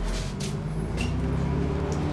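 Double-decker bus engine running as the bus drives, heard from the upper deck: a low drone that shifts a little in pitch, with a few short hisses over it.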